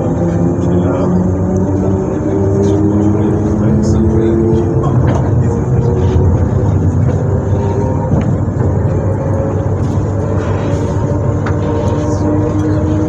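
SNCF Z 20500 (Z2N) electric multiple-unit motor car standing with its on-board electrical equipment running: a steady hum of several held tones over a rumble, the tones shifting in pitch about four seconds in.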